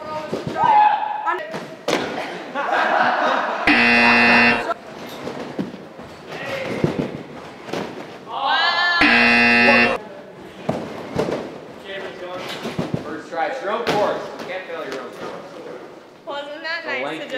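A loud buzzer tone sounds twice, each time for about a second, once about 4 seconds in and again about 9 seconds in. Between the buzzes come loose voices and the odd thud of bodies landing on the mats.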